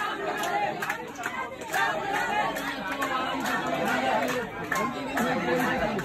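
Crowd chatter: many people talking over one another in a packed crowd, with no single voice clear.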